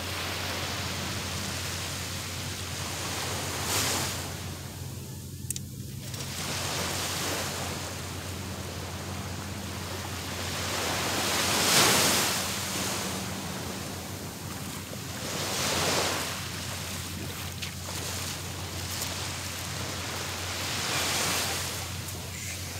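Small sea waves breaking and washing up a sandy beach, swelling every few seconds, loudest about halfway through.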